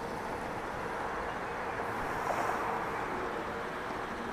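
Steady background hum and hiss with a faint constant tone, swelling slightly about halfway through.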